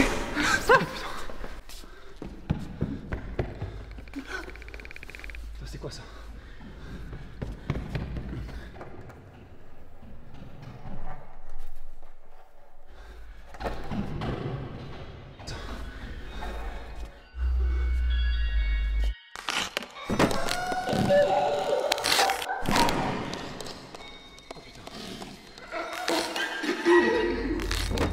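Horror-film soundtrack: scattered dull thuds and knocks over tense music, with a deep low rumble for a couple of seconds past the middle and hushed voices near the end.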